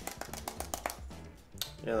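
Rapid clicking of a handheld calculator's buttons being tapped, about ten presses a second, stopping about a second in.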